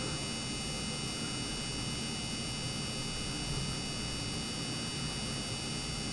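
Steady room tone: an even hiss with a faint electrical hum and several thin, steady high-pitched whines, with no distinct event.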